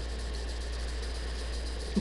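A steady low hum with a faint hiss over it, unchanging throughout; no speech.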